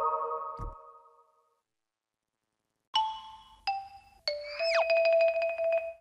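Short electronic logo jingles: the last notes of a rising chime run ring out and fade in the first second and a half. After a silent gap, three descending chime notes sound, then a tone slides down and settles into a held note that warbles rapidly.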